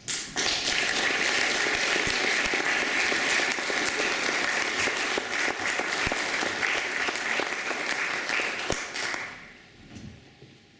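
An audience applauding. The clapping starts abruptly and dies away near the end.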